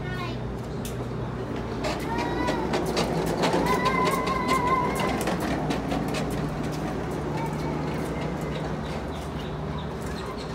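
Hard plastic wheels of a child's ride-on toy clicking and clattering over a concrete walkway. Partway through, a voice rises and holds a wavering note for a few seconds.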